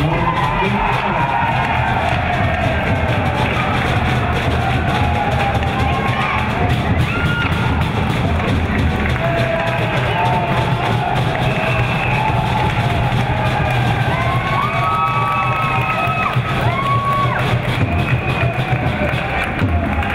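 Ice hockey arena crowd cheering and shouting in a steady din, with higher-pitched shouts and whistles standing out in the second half.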